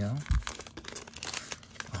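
Foil wrapper of a Topps Garbage Pail Kids trading-card pack crinkling and tearing as the opened pack is pulled apart and the cards are slid out.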